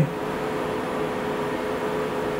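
Steady mechanical hum with a faint even tone running through it, like a fan or a machine's electrics idling, with no clicks or changes.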